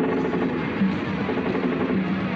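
Live punk rock band playing: distorted electric guitar in a dense, steady drone of held notes that change every half second or so.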